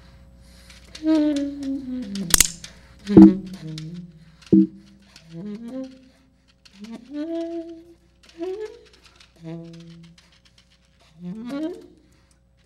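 Tenor saxophone playing short, separated phrases, several sliding upward in pitch, with gaps between them. It is mixed with sharp clicks and electronic sounds from an interactive computer soundscape; the loudest click comes a little over two seconds in.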